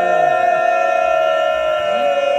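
Men's voices chanting in unison, holding one long unbroken note, the kind of congregational chant or slogan that answers the speaker at a religious gathering.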